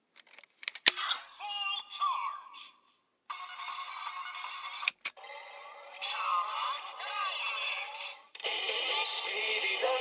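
Kamen Rider Zero-One Attache Calibur toy snapped from case mode into blade mode with a few sharp plastic clicks, the loudest about a second in. Its speaker then plays electronic standby music and sound effects, with another click about five seconds in.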